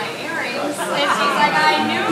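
Indistinct chatter, several voices talking over one another with no clear words.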